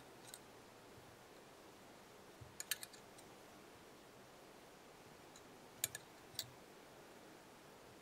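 Near silence broken by a few faint, sharp clicks from fly-tying tools being handled at the vise. There is a short cluster about two and a half seconds in, two more near six seconds and a single one just after.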